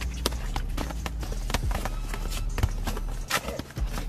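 Boxing gloves and feet striking during sparring in a ring: irregular sharp thuds and slaps, a few each second.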